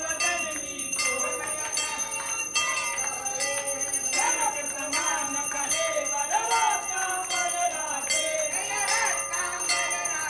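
A temple bell rung in a steady beat for the aarti, a little under one stroke a second, its ringing carrying on between strokes, while voices sing the aarti.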